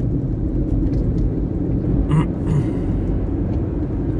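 Small car driving on a rough country road, with a steady low rumble of engine and tyres heard from inside the cabin.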